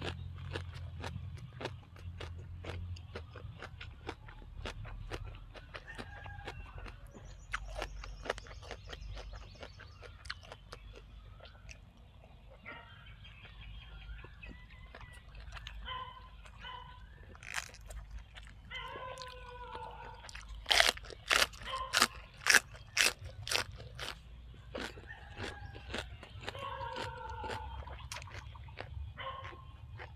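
Close-up chewing and biting of crisp raw vegetables, a run of sharp crunches, loudest in a quick series about two-thirds of the way through.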